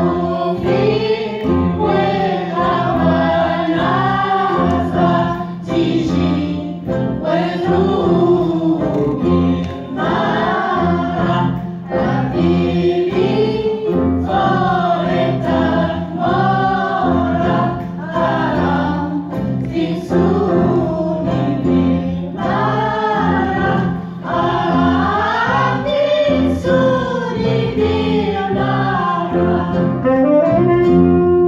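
A small group of women's voices singing a melody together, backed by a band with electric bass, oud and drums; a steady bass line repeats under the voices.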